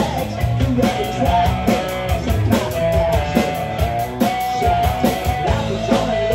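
Live rock band playing: electric guitars over a drum kit keeping a steady beat, with a held melody line that bends between notes.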